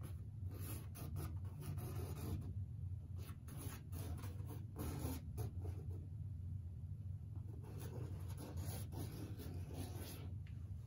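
A charcoal stick scratching and rubbing across stretched canvas in many short, irregular strokes as lines are sketched in, over a steady low hum.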